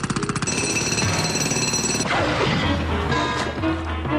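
Cartoon sound effect of a rapid jackhammer-like mechanical rattle, about fifteen hits a second, which stops about half a second in. High ringing tones follow, then a quick falling slide in pitch about two seconds in, over cartoon orchestral music with a bass line.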